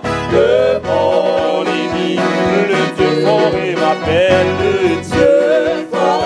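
A man singing a French hymn with vibrato over instrumental accompaniment.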